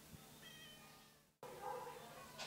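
Near silence, with one faint, brief meow from a cat about half a second in; the sound then drops out completely for a moment.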